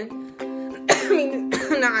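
A woman coughing, twice, about a second in and again near the end, over soft background music.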